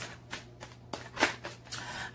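Tarot cards being handled and shuffled in the hands before a draw: a few short papery flicks and taps.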